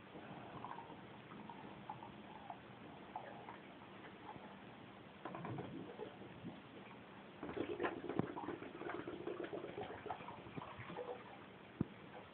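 Small taps, clicks and light splashes of a plastic bottle being handled in bath water, faint at first and busier in the second half.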